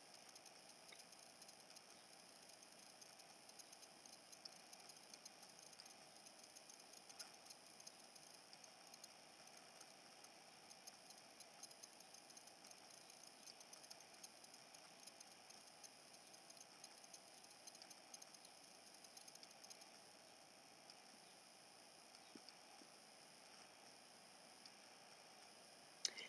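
Near silence: faint steady hiss with scattered tiny clicks.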